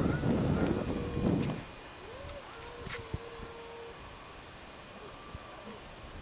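Wind buffeting the microphone in gusts for about the first second and a half, then the faint steady whine of the Parkzone Cub's electric motor at low throttle as the floatplane comes down onto the lake, with a short rise in pitch about two seconds in.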